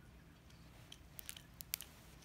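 Baby mouthing and sucking on a pacifier, with a quick run of small wet clicks a little past a second in.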